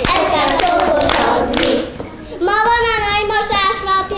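Young children singing a folk song together while clapping their hands, the claps sharp against the singing. About halfway in the group stops and a single child's voice carries on alone, holding its notes.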